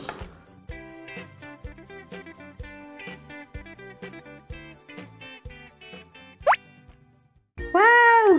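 Light background music for children with evenly spaced notes, and a single quick rising swoop sound effect about six and a half seconds in; the music drops out shortly before the end.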